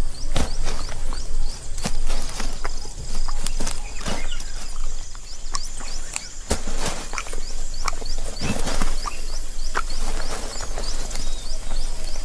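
Outdoor wildlife ambience: a steady high insect drone and a short chirp repeating about twice a second, with scattered scrapes and rustles as a monitor lizard claws at the sandy soil and handles a large egg.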